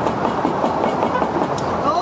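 Busy outdoor street ambience: a steady wash of noise with indistinct voices and scattered small clicks.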